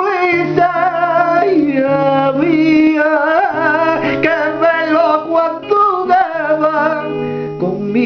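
A man singing long, wavering notes without clear words, accompanying himself on a strummed nylon-string classical guitar.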